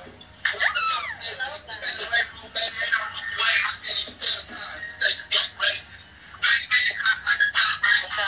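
A recorded song with a singer, played on one side of a live video stream.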